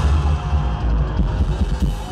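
A live rock band playing loud, with the drum kit hitting hard and heavy over bass and electric guitar.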